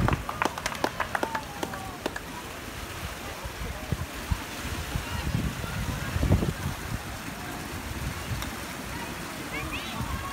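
Outdoor ambience: distant voices over a steady rushing noise, with a low rumble on the microphone about six seconds in.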